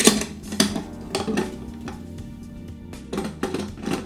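Sharp metal clinks and rattles as the nuts on a steel antenna pole clamp are loosened and the clamp and pipe are handled, with a few clicks in the first second or so. Steady background music plays underneath.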